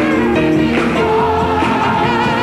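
Gospel music: a choir singing sustained chords over a band, with a saxophone playing a wavering lead line.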